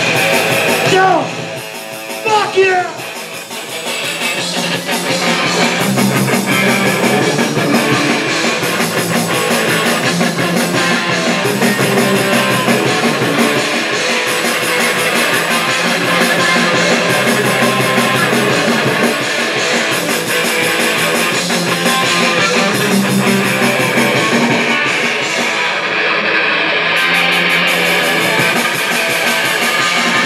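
Live punk rock band playing loud, with distorted electric guitars. About a second in the sound thins briefly under a few gliding notes, then the full band comes back in at around four seconds and plays on steadily.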